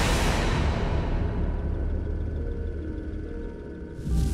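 A Honda rally motorcycle's engine noise rushes loud at the start and fades over the first second or two, under background music with a steady low rumble.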